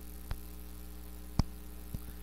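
Steady electrical mains hum in the sound system, with a few short clicks, the loudest about halfway through.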